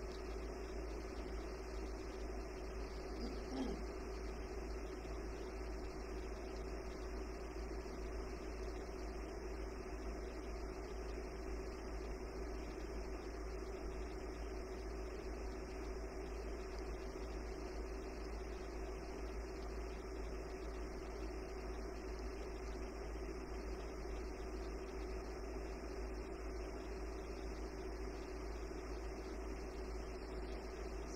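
Steady room tone with no speech: a constant low hum and hiss, with one faint knock about three and a half seconds in.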